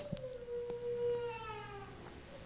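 A faint, drawn-out high-pitched whine that slides slightly lower and fades near the end.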